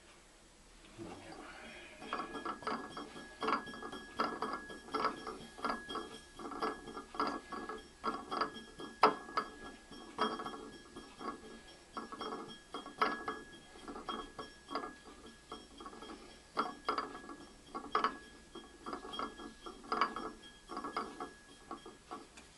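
Potter's banding wheel being turned by hand, its bearing giving a dense, irregular run of clicks and rattles that starts about two seconds in. A faint steady high tone runs underneath.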